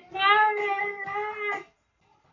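A man singing solo, holding one long high note that stops shortly before the end.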